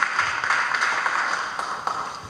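Audience applauding, the applause gradually thinning out toward the end.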